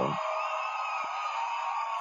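A pause in a video-call conversation: a man's voice trails off at the start, then faint, thin voices or laughter over a steady hiss.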